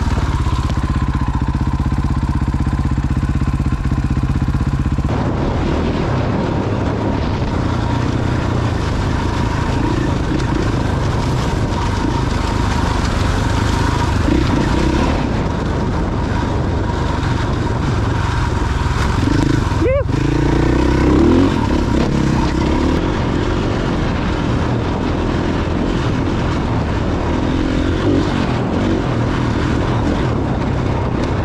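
Dirt bike engine running steadily under load as the bike rides a rocky desert trail, with a loud rushing noise over it. About twenty seconds in there is a brief, sharp sweep in pitch.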